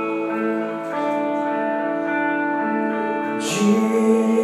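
Live worship band music: guitar and keyboard holding sustained chords that change about a second in, with singing voices coming in near the end.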